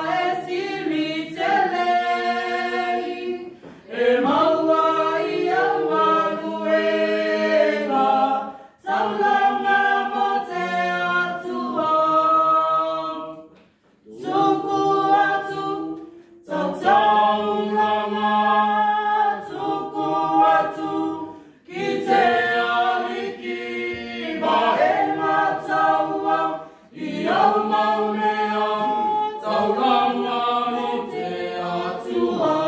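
Small mixed group of men's and women's voices singing together unaccompanied, in phrases with short breaks for breath between them.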